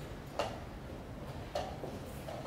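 Two short clicks about a second apart, from play at a chessboard: wooden chessmen and a chess clock being handled in a blitz game.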